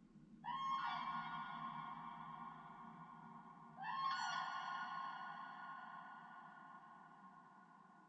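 Bukkehorn (goat horn) sounding two long notes, each sliding up in pitch at the start and then fading slowly with reverb, the second about three seconds after the first, over a soft low drone.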